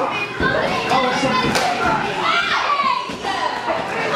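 Young children in a crowd shouting and calling out over one another, echoing in a large hall, with a thud about half a second in.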